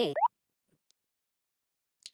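The electronic background music ends on a quick upward-sliding blip in the first fraction of a second, then dead silence.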